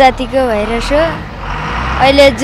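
A boy's voice speaking for about the first second, then a pause filled with the steady noise and low hum of buses and traffic.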